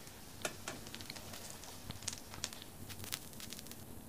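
Hot oil crackling faintly in a flat frying pan as a noodle pancake fries, with irregular small pops and a few sharper ones.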